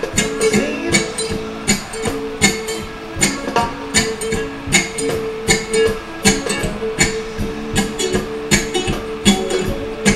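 Electric cigar box ukulele strummed in a steady, even rhythm: an instrumental passage between sung lines.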